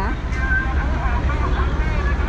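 Steady low rumble with faint talking over it.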